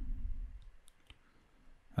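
A few faint clicks of a computer mouse over a low room hum that fades out.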